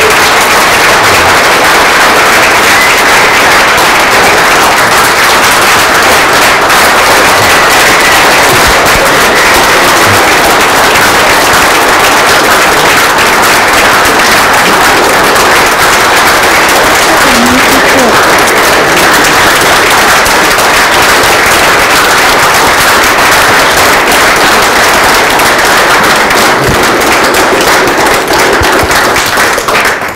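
Audience applauding: many people clapping loudly and steadily, the applause dying away at the very end.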